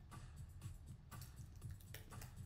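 A few quiet computer keyboard and mouse clicks, spaced irregularly, over faint background music.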